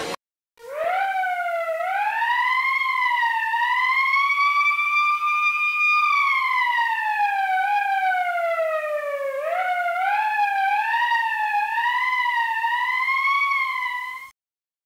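A siren wailing: one wavering tone that starts about half a second in, rises slowly over several seconds, falls back, then climbs again.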